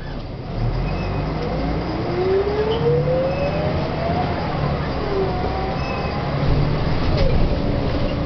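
Volvo B10M bus running under way, heard from inside the saloon: a steady low engine rumble with a drivetrain whine that climbs in pitch for a couple of seconds as it accelerates, breaking off about four seconds in, then starting again more faintly.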